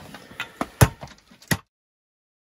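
A few sharp knocks and cracks of walnuts being broken by striking them with a glass champagne bottle, the loudest just under a second in; the sound cuts off suddenly near the end.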